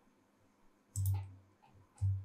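Computer mouse clicks: one sharp click about a second in, then another at the very end, each followed by a brief low hum that fades away.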